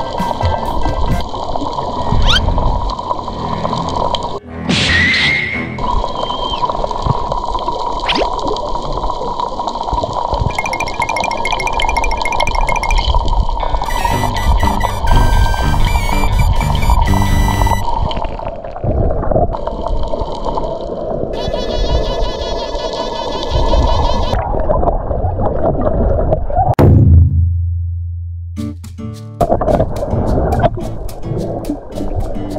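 Background music with added editing sound effects, including a short rising glide about five seconds in and a falling sweep into a low tone near the end.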